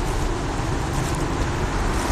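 Steady outdoor street noise with a low rumble, picked up on a phone's microphone.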